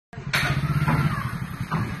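Vehicle engine idling with a steady low pulse, with a few short louder sounds over it in the first second and a half.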